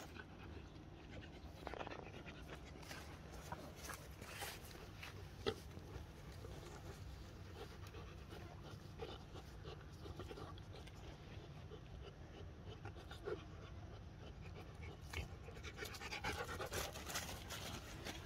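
Faint panting from an animal at rest, with scattered light clicks and rustles, busiest near the end.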